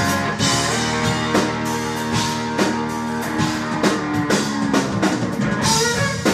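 Live blues-rock band playing an instrumental passage between vocal lines: electric guitar and electric bass over a drum kit keeping the beat.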